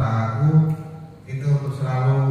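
A man speaking into a handheld microphone, amplified in a large hall, with a short pause about a second in.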